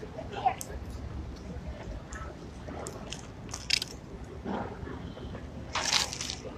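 Quiet street ambience with faint, distant voices and a low rumble, broken by a few small clicks and crackles close to the microphone.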